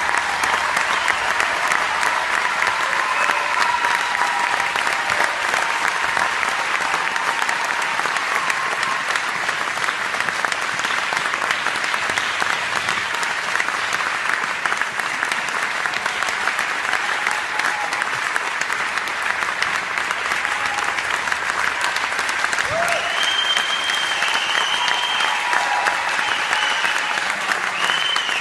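Audience applauding: a dense, steady clapping of many hands that holds at the same level throughout, with a few voices mixed in.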